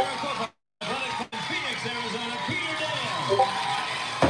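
Voices from an old TV sports broadcast playing back through computer speakers, cut by a brief dropout about half a second in.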